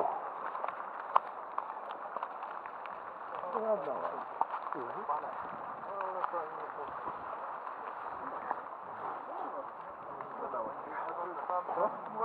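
Indistinct voices of several people talking at a distance over outdoor background noise, with one sharp click about a second in.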